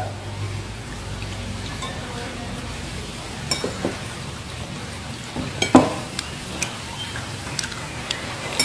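Eating sounds at a table: a steady low hiss with a few light clicks and taps of fingers and utensils against a plate as fried chicken is pulled apart, the loudest tap a little before six seconds in.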